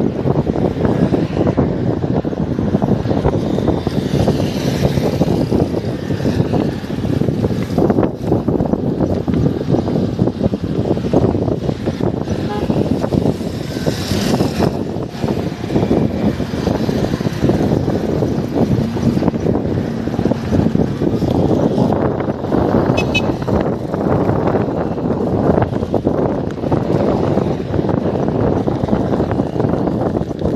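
Steady wind rushing over the microphone and road noise from a bicycle riding along a paved highway, with motor traffic passing.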